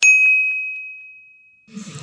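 A single bell-like ding sound effect, struck once with one clear tone that fades away over about a second and a half.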